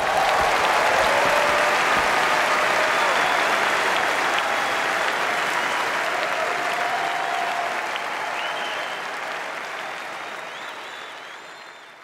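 Audience applauding and cheering, with a few short whistles; the applause slowly fades out over the last few seconds.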